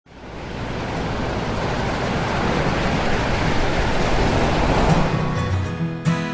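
Steady rush of ocean surf, fading in at the start. Acoustic guitar music comes in near the end.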